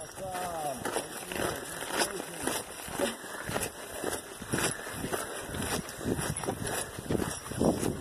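Footsteps crunching irregularly on a dirt and gravel hiking trail as the person holding the camera walks, with faint voices early on.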